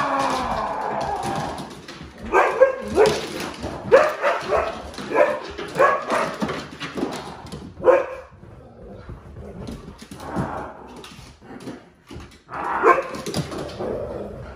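Siberian huskies barking at an unfamiliar masked figure: a long falling howl at the start, then a run of short barks about every half second to a second. After a few quieter seconds comes another burst of barks near the end.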